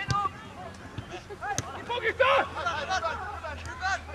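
Players shouting and calling to each other during a football match, several voices overlapping in short calls. Two sharp knocks stand out, one at the start and one about a second and a half in.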